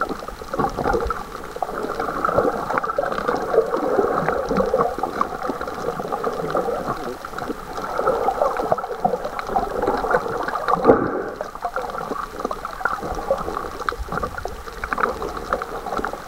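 Muffled underwater sound of water moving and gurgling around a submerged camera, with many small crackles and one brief louder knock about two-thirds of the way in.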